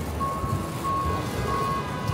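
A truck's reversing alarm beeping at an even pace, three beeps in two seconds, over a low rumble of engines and street traffic.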